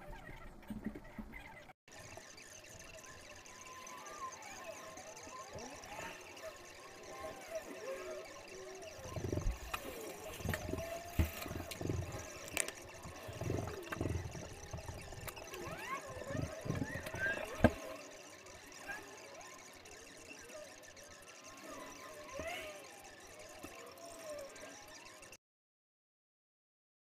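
Fast-forwarded audio, sped up about fifteen times: a garbled run of rapidly gliding chirps and squeaks with scattered sharp clicks, cutting off abruptly just before the end.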